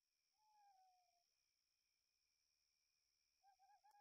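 Near silence, with two very faint, short wavering whistle-like tones: one about half a second in, the other near the end.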